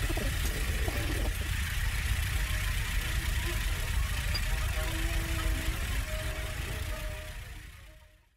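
Low electronic drone: a steady deep rumble under a layer of hiss, with a few faint held tones in the second half. It fades out near the end.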